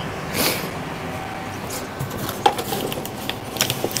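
Light clicks, knocks and rustling of packaging being handled in a foam shipping box, over a steady low hum. The clicks are sharper about two and a half seconds in and again near the end.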